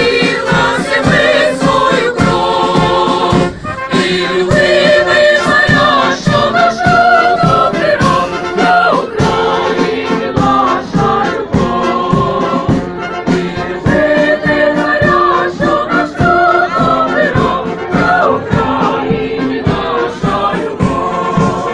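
Brass band playing a melody with held notes, with a bass drum beating steadily, while voices sing along.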